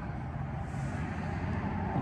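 Steady low background rumble with a faint hiss, and no distinct event.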